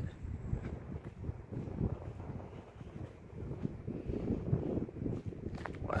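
Wind buffeting the microphone: a low, uneven rushing noise.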